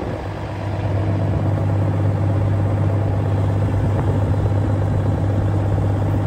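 Kenworth W900 semi truck's diesel engine idling steadily with a low, even hum, held at a raised idle.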